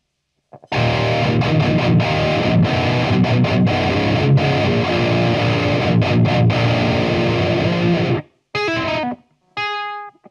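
Eight-string electric guitar played through an Axe-Fx III's Bogner Uberschall amp model into a guitar cabinet. A dense, heavily distorted metal riff with many sharp stops starts about a second in and cuts off near the end. A few short ringing notes follow, with pauses between them.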